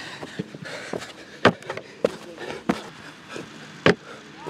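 Players' footfalls and landings on grass during a hurdle-hop drill: a few sharp thuds, the two loudest about one and a half seconds in and just before the end.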